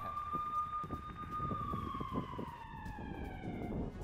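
An emergency vehicle siren holding one steady tone, then gliding gradually lower in pitch over the last two seconds as it fades.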